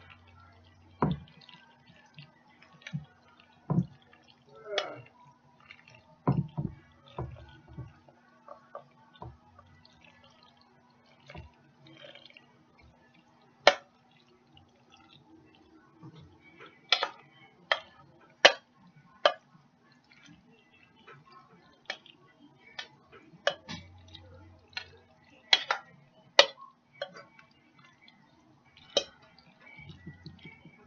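Irregular clinks and knocks of a utensil against a mixing bowl and casserole dish as a macaroni and Spam mixture is scooped into the dish, some strokes sharper and louder than others, over a faint steady hum.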